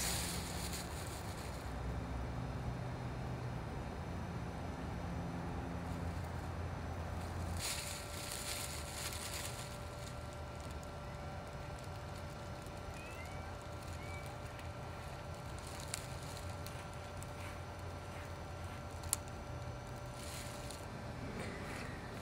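Black plastic garbage bag rustling and crinkling as it is stretched and wrapped over a wooden board, in short bouts, the longest about eight seconds in, over a steady low outdoor rumble.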